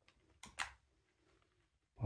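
Near silence, broken about half a second in by two short, soft noises close together.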